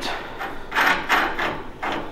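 Metal clinking and scraping of lug nuts being handled and turned on the wheel studs of a trailer wheel hub carrying a brake rotor, in a few short rattles, the longest about a second in.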